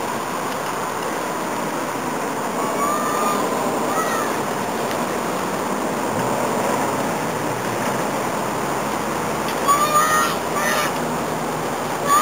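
A child shouting in short, high, rising-and-falling cries, a couple a few seconds in and a louder run of them near the end, over a steady hiss of outdoor noise.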